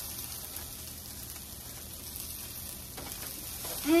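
Cauliflower fried rice sizzling steadily in a frying pan, with a wooden spatula stirring and scraping through it.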